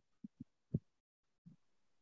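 A few faint, dull taps of computer keyboard keys, the loudest about three-quarters of a second in, with another tap near the end.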